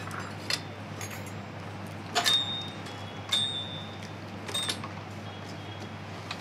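Metal clinks from a stand mixer's stainless steel bowl and fittings being handled: four sharp clinks about a second apart, the last three each leaving a brief high ring, over a low steady hum.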